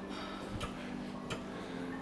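Two light clicks, about half a second and a second and a third in, over a faint steady low hum of gym background sound.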